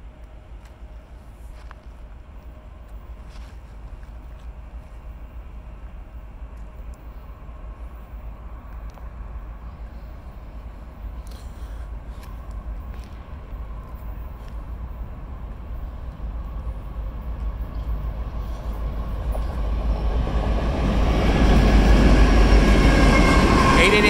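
Union Pacific diesel freight locomotives leading a manifest train as it approaches; the engine rumble grows steadily louder and becomes loud as the lead units pass close, about three seconds before the end.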